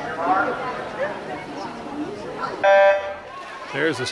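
A swim-meet starting horn sounds once, a short steady beep of about a third of a second, signalling the start of a backstroke race. Spectators chatter throughout, with shouts just after the beep.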